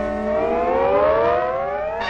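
A long upward glide in pitch from the cartoon's opening soundtrack. Several tones slide up together for about two seconds, swelling to their loudest about a second in, and lead straight into the title theme music.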